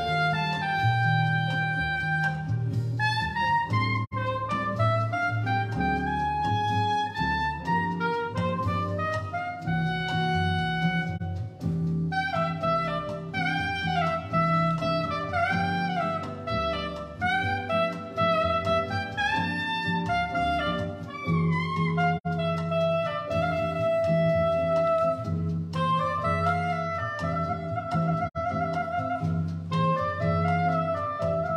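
Soprano saxophone playing a melody with gliding phrases and vibrato on its held notes, over a recorded backing track with a steady bass line.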